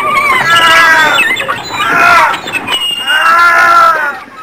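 A person screaming: a run of loud, high-pitched, drawn-out cries, each up to about a second long with short breaks between them.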